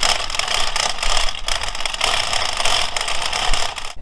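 The two plastic turbine wheels of a Polaris Atlas XT suction pool cleaner, spun by hand out of the water, giving a steady, rapid clatter of fine ratcheting clicks.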